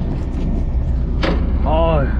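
Steady low drone of a fishing boat's engine running, with a sharp tap about a second in and a brief voiced exclamation near the end.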